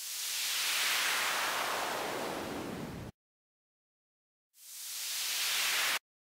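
Synthesized white noise from FL Studio's Sytrus run through a downward filter sweep. It fades in, and its hiss slides from bright to dull over about three seconds, then cuts off suddenly. After a second and a half of silence a second sweep fades in bright and stops abruptly near the end.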